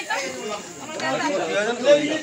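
Several people talking over one another: overlapping voices and chatter.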